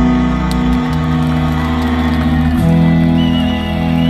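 Live music played through stage loudspeakers: long held chords over a bass line, changing about a second in and again past the middle.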